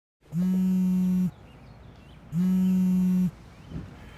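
Mobile phone buzzing on vibrate against a hard surface: two steady buzzes, each about a second long, a second apart.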